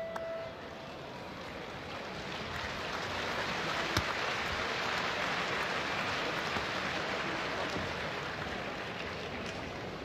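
Arena crowd applauding at the end of a boxing bout, a steady wash of noise that swells over the first few seconds, as the last of the ringside bell dies away at the very start. A single sharp click about four seconds in.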